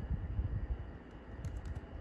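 Typing on a computer keyboard: a short run of keystrokes as letters are entered into a text field.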